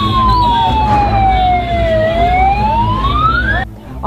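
A siren wailing: one slow tone that falls for about two seconds, then climbs again and cuts off abruptly shortly before the end, over a low rumble.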